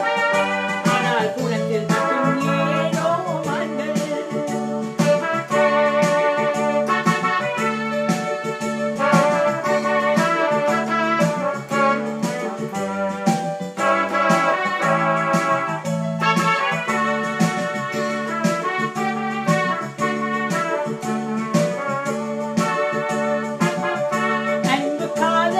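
Technics electronic keyboard playing an instrumental break in an organ-like voice, a melody over a steady repeating bass line and beat.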